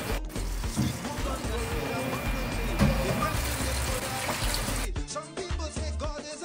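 Kitchen tap running into a sink under background music. About five seconds in the water stops abruptly and only the music remains.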